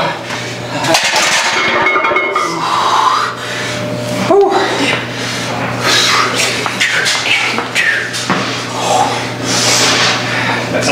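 A man grunting and breathing hard as he strains through heavy barbell squat reps taken to failure, with a few sharp metal clinks from the loaded bar.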